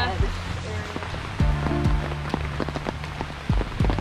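Steady rain falling, heard under background music with held low notes that change a couple of times and a few sharp beats.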